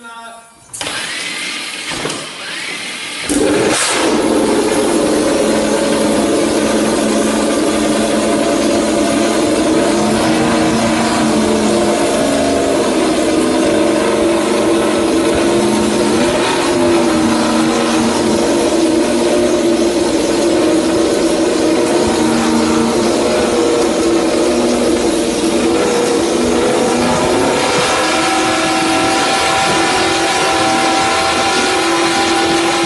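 Suzuki MotoGP race bike being started with a starter roller at the rear wheel: a rising spin-up, then the engine catches about three seconds in and runs loud and steady on the stand.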